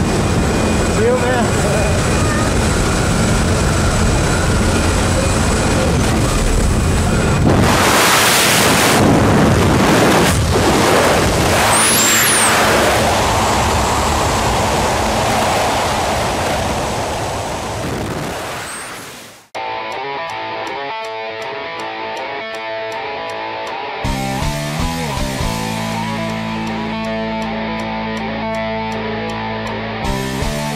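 Jump-plane engine and wind noise roaring through the open door, louder for a few seconds in the middle, then fading out and cutting off suddenly about two-thirds of the way through. Rock music with electric guitar follows, and it gets louder a few seconds later.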